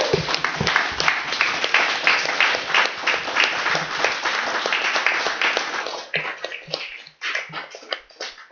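Audience applauding: dense clapping that thins out about six seconds in to a few scattered claps.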